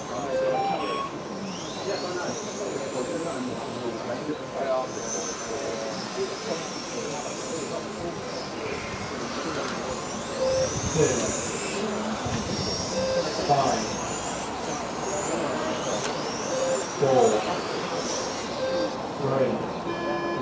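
Electric 1/10 scale touring cars with 17.5-turn brushless motors racing around the track: a high motor whine that repeatedly rises and falls as the cars accelerate and brake through the corners. People talk in the background.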